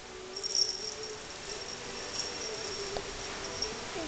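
A cat growling low over a feather teaser toy it has just caught, holding it in its mouth: one long, slightly wavering moan that runs on without a break.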